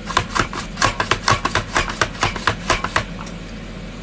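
Carrot being sliced paper-thin in a plunger-style mandolin vegetable chopper, in a fast run of sharp chopping strokes, about five or six a second, that stops about three seconds in.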